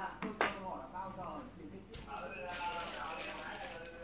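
Homemade wooden slingshot crossbow being handled and laid on a cloth mat. A sharp click about half a second in and a weaker one near two seconds, with faint voices behind.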